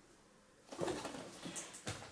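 Faint handling sounds of a cardboard firework battery being moved and put down, ending in a short knock just before the end.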